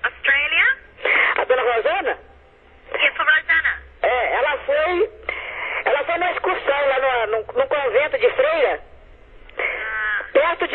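Speech only: a telephone conversation, the voices heard over the phone line.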